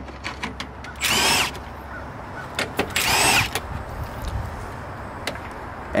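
Milwaukee Fuel cordless driver spinning screws out of a grille panel in two short bursts, about a second and about three seconds in, each a brief whine that rises and falls in pitch. A few small clicks come between the bursts.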